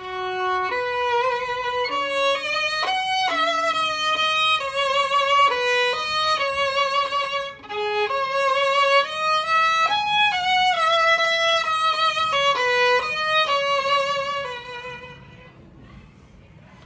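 Solo violin bowed in a melodic passage of sustained legato notes, changing pitch about every half second, with a few double stops; the playing breaks briefly about halfway and dies away shortly before the end.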